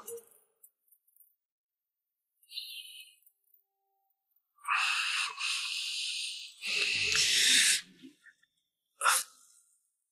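A person's breathy sounds: two long exhalations, the second lower and more voiced, like a heavy sigh, then one short sharp breath near the end, as a man stirs awake.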